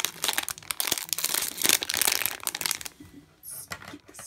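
Metallic foil blind-bag pouch crinkling in the hands as it is pulled open and unfolded, a dense irregular crackle that dies down for the last second.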